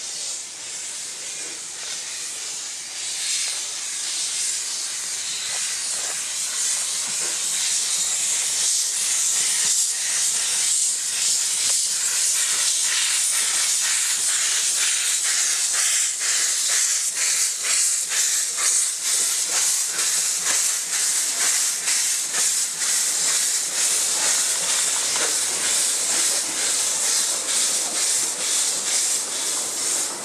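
Narrow-gauge steam tank locomotive moving off with its cylinder drain cocks open, giving a loud hiss that builds over the first several seconds. A steady rhythm of exhaust beats runs under the hiss as it draws near and passes.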